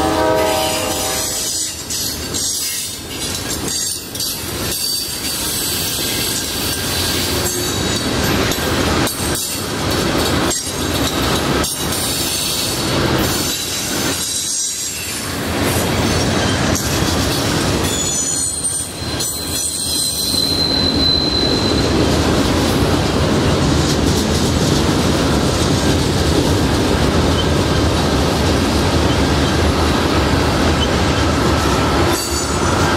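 Freight train of tank cars, covered hoppers and boxcars rolling past: steady rumble of wheels on rail with scattered clicks and brief high-pitched wheel squeals, growing louder and denser after about twenty seconds. A train horn chord ends about a second in.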